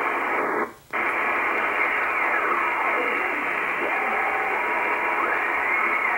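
Icom IC-R8500 communications receiver in sideband mode giving steady shortwave band hiss. The hiss cuts out for a moment under a second in as the mode is switched from LSB to USB. Faint whistling tones glide down and later up through the hiss as the dial is tuned.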